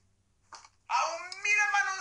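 A high-pitched voice making drawn-out sounds with sliding pitch, starting about a second in after a brief faint click.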